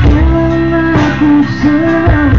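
A live rock band playing loudly: drums and bass with electric guitar, under a held melody line that steps between notes.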